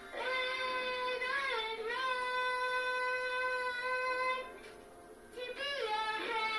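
A young girl singing into a toy microphone: one long held note with a slight waver about a second and a half in, a brief pause, then a new phrase that slides up and down in pitch near the end.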